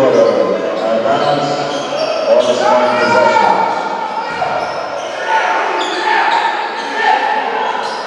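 Basketball bouncing on a hardwood gym floor during live play, with several voices of players and onlookers calling out, in a large reverberant gym.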